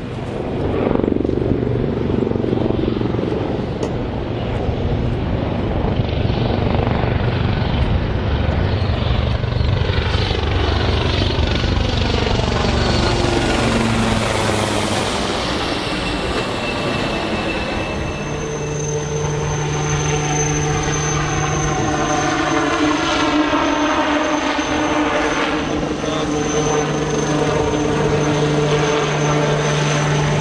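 Aircraft noise: a helicopter's rotor and turbine with steady low engine tones. A high whine rises steeply in pitch about ten seconds in and cuts off around fourteen seconds. A new steady engine tone sets in near twenty seconds.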